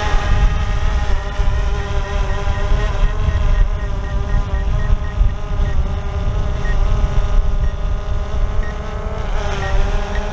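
DJI Mavic 2 Zoom quadcopter in flight close by: its propellers make a steady multi-toned whine that dips slightly in pitch twice as it manoeuvres, with wind buffeting the microphone. A faint, regularly repeating beep runs through most of it: the drone's obstacle proximity alert.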